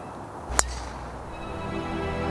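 Background music with a single sharp crack about half a second in: a 3-wood striking a golf ball.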